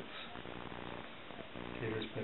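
Small dog making a low grumbling vocalization in its throat, a soft pitched 'talking' sound.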